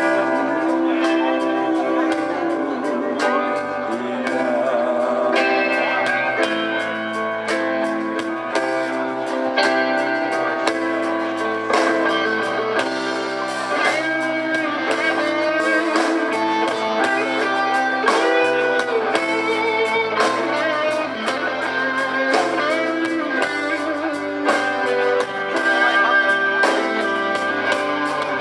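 Live rock band playing an instrumental passage: an electric guitar plays a lead line with bent notes over steady drums.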